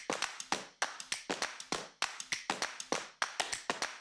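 A quick run of sharp taps or clicks, about five a second and unevenly spaced, each dying away quickly.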